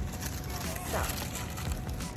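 Cardboard box flaps and tissue paper rustling and crinkling as a box is opened by hand, over steady low background noise.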